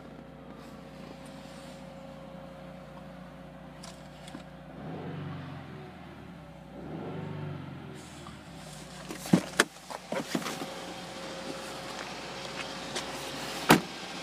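A 2015 Subaru WRX's turbocharged flat-four idling steadily, heard from inside the car, swelling briefly twice in the middle. Several sharp clicks and knocks in the second half as the car's door is opened and shut.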